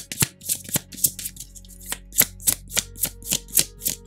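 A deck of tarot cards being shuffled by hand: an even run of crisp card slaps, about four a second. Soft background music sits underneath.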